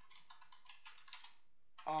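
Computer keyboard typing: a quick, uneven run of keystrokes as a line of text is typed.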